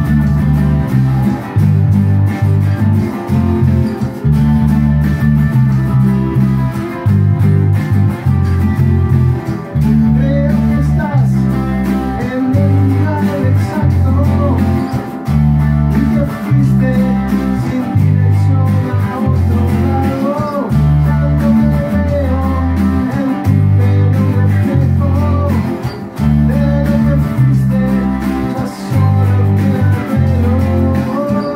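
An electric bass and two electric guitars playing a song together, with a loud, prominent bass line of notes changing about every half second. From about ten seconds in, a higher lead line with bent, sliding notes plays over it.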